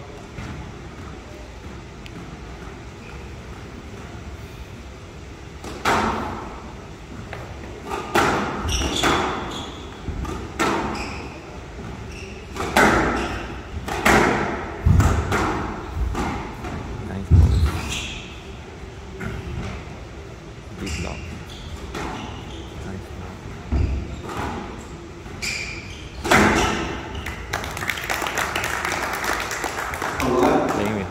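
A squash rally: the ball cracking off rackets and banging against the court walls in a quick irregular series of sharp knocks, starting about six seconds in and ending a few seconds before the end, in a large echoing hall.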